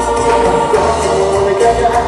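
Loud live Latin group music: several held, choir-like voices over keyboard, with congas in the band.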